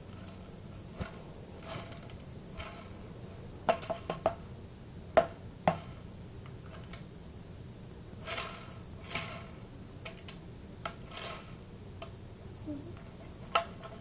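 Scattered light clicks, knocks and small rattles of a Crosman Pumpmaster 760 air rifle being handled as its BBs are taken out, with a few brief rustling swishes between them.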